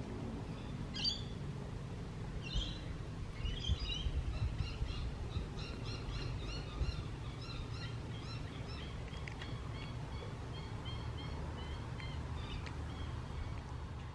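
Birds calling in the background: two sharper calls near the start, then a long run of short, rapid chirps that fades out near the end. A steady low rumble lies underneath.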